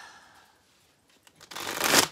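A deck of oracle cards being shuffled by hand: a rustling rush of cards that builds from about a second and a half in and is loudest at the end.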